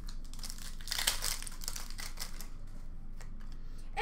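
A hockey card pack's foil wrapper being torn open and crinkled by hand, a dense rustle through the first two and a half seconds that then dies down to a few light ticks.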